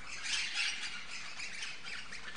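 Birds chirping and squawking, many short high calls in quick succession.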